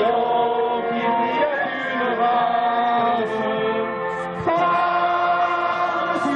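A group of men and women singing a song together from lyric sheets, without instruments, in long held notes; there is a short breath pause about four and a half seconds in before the next line begins.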